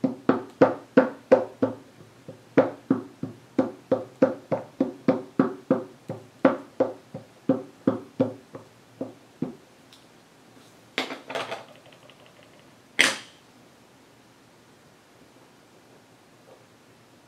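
Ink pad tapped again and again onto the rubber face of a wooden-mounted rubber stamp, about three light knocks a second, growing fainter and stopping about nine seconds in. A short clatter follows, then one sharp knock about 13 seconds in as the stamp is handled and set down.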